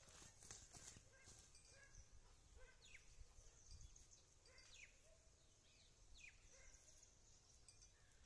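Near silence: faint outdoor ambience with a few short, faint falling chirps.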